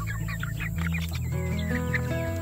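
Hens clucking, a quick run of short calls in the first second or so, over background music.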